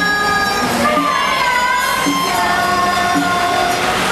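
Chinese bamboo flute (dizi) playing long held notes that slide and bend in pitch. Short, low plucked notes sound underneath, as in a small traditional ensemble.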